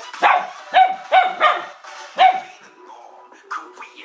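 A dog barking, a run of sharp barks over the first two and a half seconds, at pop music playing from a laptop; the music carries on quietly after the barks stop.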